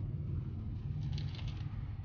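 A bite into a crispy corn taco shell, with a brief crackly crunching about a second in, over a steady low rumble inside the car cabin.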